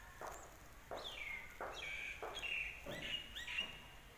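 A bird calling: a quick series of clear whistled notes, each sliding down in pitch, about a second in until shortly before the end. Soft irregular knocks sound underneath.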